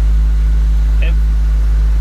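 Ford SVT Focus's 2.0-litre Zetec four-cylinder idling steadily just after start-up, heard from inside the cabin as a low, even rumble. It is running on a freshly fitted polyurethane rear engine mount, which makes the idle feel "way smoother" than on the worn-out factory rubber bushing.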